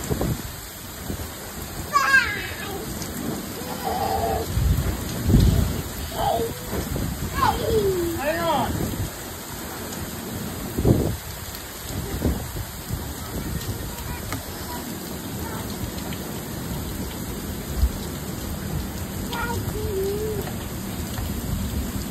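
Storm wind and driving rain: a steady hiss of rain with irregular gusts hitting the microphone.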